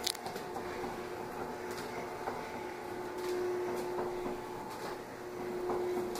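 Motorised window drape running: a steady electric-motor hum as the automatic curtain travels, with a few faint clicks.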